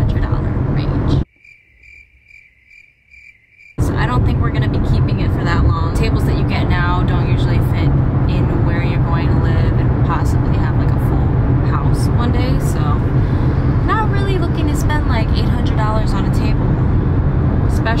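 Steady road rumble inside a moving car's cabin. About a second in it cuts out for a couple of seconds to a quiet stretch, in which a faint beep repeats about three times a second.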